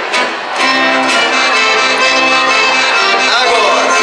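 Accordion playing a slow rancheira in full, sustained chords. The sound dips briefly in the first half second, then comes back strongly.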